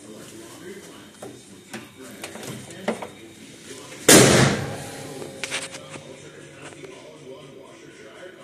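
The steel hood of a 1968 Dodge GTS slammed shut: one loud bang about four seconds in with a short ring-out, followed by a few lighter clicks. Faint voices in the background throughout.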